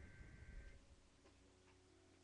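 Near silence: room tone, with a couple of faint ticks early on.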